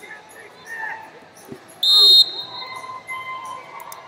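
A referee's whistle blown once, short and loud, about two seconds in, stopping the wrestling action. Hall noise of scattered voices and light thuds on the mats runs around it.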